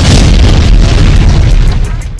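Explosion sound effect: a sudden loud boom with a deep rumble that holds, then fades near the end.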